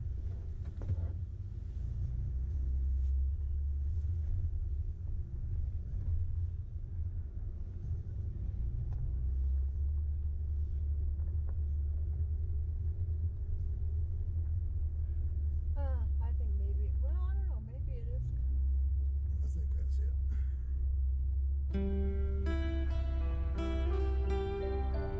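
Low, steady rumble of an off-road vehicle crawling up a rocky dirt mountain trail, heard from inside the cab. Acoustic guitar music comes in near the end.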